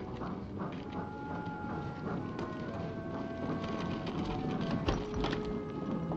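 Background music of sustained, held notes that step to new pitches every second or so, over a busy scatter of clicking footsteps, with a low thump about five seconds in.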